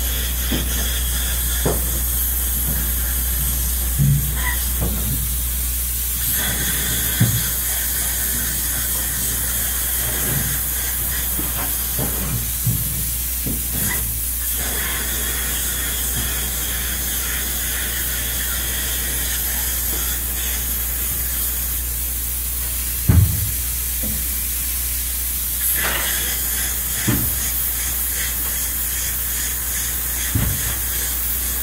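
Spray foam gun hissing steadily as open cell foam insulation is sprayed onto the underside of a roof deck, with a steady low hum beneath and a few dull knocks.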